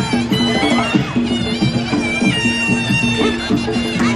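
Traditional Muay Thai fight music (sarama): a shrill, reedy Javanese oboe (pi java) melody held in long notes that step from pitch to pitch, over a steady pulsing drum rhythm.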